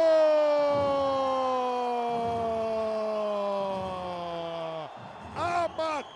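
Sports commentator's long drawn-out goal shout: one held vowel, the end of the scoring team's name 'Marreco', slowly falling in pitch for about five seconds before it breaks off. Brief speech follows near the end.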